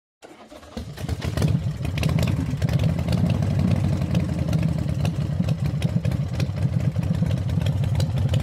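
A vehicle engine starting up and then running with a low, uneven rumble, fading in over about the first second.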